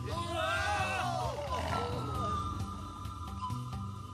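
Several men yelling and crying out wordlessly over dramatic background music. The yells stop about two seconds in, leaving the music with a held high note and light percussive ticks.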